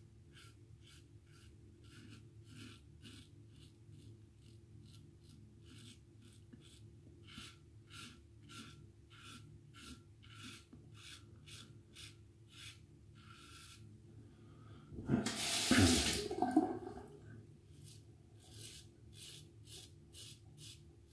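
Double-edge safety razor scraping through lather and stubble in quick short strokes, about two to three a second. About fifteen seconds in, water runs briefly from a tap, the loudest sound.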